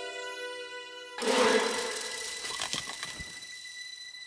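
Film score: a sustained held chord breaks off about a second in to a sudden loud crash-like hit that fades over about two seconds, with a thin high tone held underneath.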